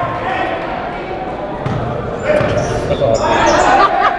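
A basketball being dribbled on a hardwood gym floor, with shouts and crowd voices echoing around the gymnasium. The noise swells over the last two seconds.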